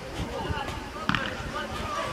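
A football struck once with a sharp thud about a second in, amid shouting young players on the pitch.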